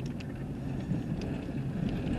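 Steady low road and engine noise inside a slowly moving car's cabin, with a few faint ticks.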